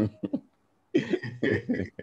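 A person coughing in a few short bursts, with a brief silent gap about half a second in.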